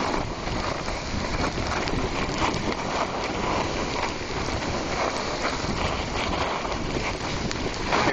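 Steady wind noise buffeting the microphone of a camera carried by a skier moving fast down a steep slope.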